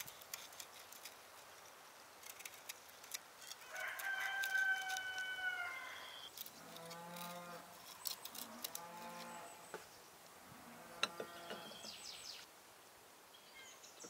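Farm animals calling in the background. One long, steady, higher call comes about four seconds in and is the loudest sound; several lower calls follow between about six and twelve seconds. Light clicks of a knife cutting and crumbling dry bread into a glass bowl run underneath.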